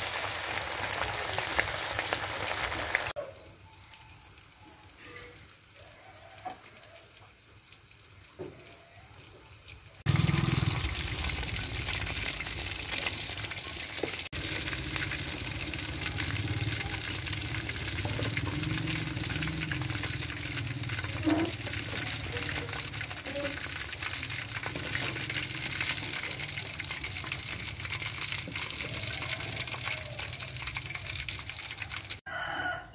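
Hot oil sizzling as noodle-wrapped pork balls deep-fry in a wok. The sizzle drops away to a much quieter stretch from about 3 to 10 seconds in, then comes back loud and steady for the rest, with a low rumble underneath.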